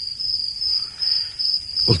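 Crickets chirring steadily in a high, even trill.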